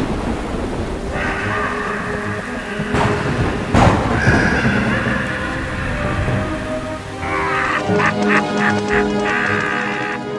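Cartoon storm sound effects: heavy rain hissing steadily with two cracks of thunder a little under a second apart, about three and four seconds in, under dramatic music with held tones. Near the end the music turns choppier and more rhythmic.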